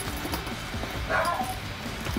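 A dog barking once, a single short bark about a second in.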